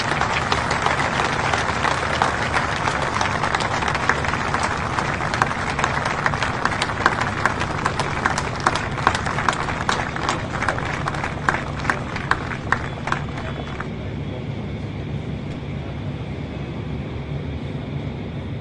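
A crowd clapping over a murmur of voices and outdoor background noise. The clapping dies away about fourteen seconds in, leaving the murmur.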